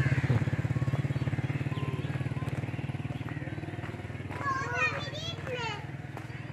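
Motorcycle engine running at low revs with a fast, even low pulsing that slowly fades. High voices, likely children's, come through faintly near the end.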